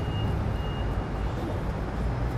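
Street background noise: a steady low rumble, with a faint high beep that sounds twice in the first second and a half.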